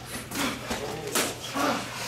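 Muay Thai sparring in a gym ring: two sharp bursts about three-quarters of a second apart, and short low grunt-like sounds from the fighters as they strike and exchange.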